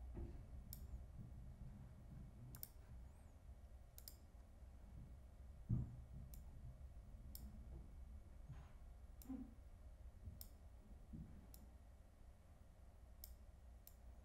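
Faint, sparse computer clicks, about ten spread out, from the pointer clicking and dragging on-screen sliders, over a low steady room hum. A single dull thump a little before the middle is the loudest sound.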